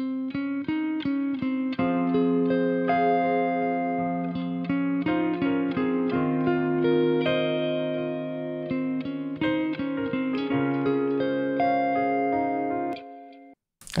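Electric guitar playing a subtle picked line with a lot of delay, the echoes of each note piling up into held, overlapping tones. It stops about a second before the end.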